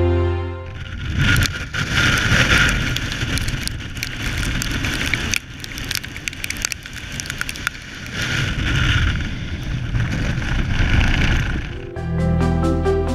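Strong, gusty wind buffeting the camera microphone, a rough rushing rumble that swells and drops with the gusts. Background music cuts off about half a second in.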